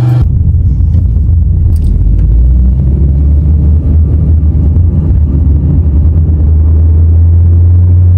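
A car driving: a loud, steady low rumble that cuts off suddenly near the end.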